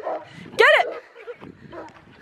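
A man's loud shout of "Get it!" urging pig dogs on during a chase, lasting about a quarter second and falling at the end, over the rough low noise of movement and scuffling.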